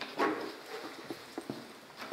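Detection dog sniffing at scent cans: a short puff of breath near the start, then several light clicks and taps as it steps among the cans on the hard floor.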